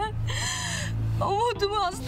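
A woman crying: a sharp, breathy sob about half a second in, then a wavering, tearful voice.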